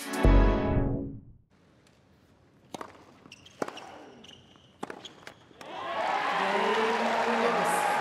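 The end of a short electronic intro music sting with a low hit, fading out. Then a tennis rally: several sharp racquet-on-ball strikes about a second apart. Then a stadium crowd cheering and applauding as the break-point rally ends in a break of serve.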